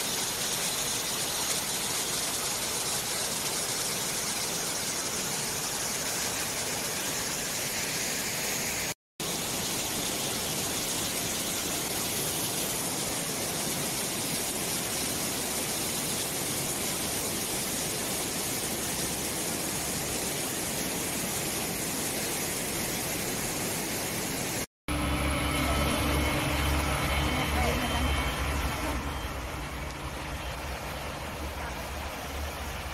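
Rushing water of a rocky mountain stream: a steady even noise, broken twice by brief cuts. After the second cut, near the end, a steady low engine hum of road traffic takes over.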